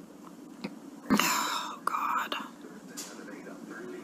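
A crying woman's breathy, unvoiced vocal sounds in two short bursts, about a second and two seconds in, like whispered sobs or shaky breaths between her words.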